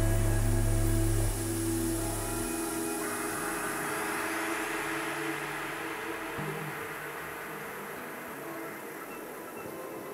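Live dark-ambient electronic music. A deep low drone drops out in the first couple of seconds and gives way to a hissing noise wash with faint held tones that slowly fades.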